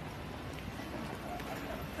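Steady street background noise picked up by a handheld phone while walking, with faint voices of passers-by.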